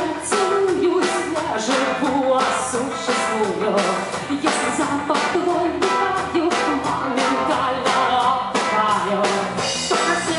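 Live rock band: a woman singing loudly over electric guitar, bass guitar and drum kit.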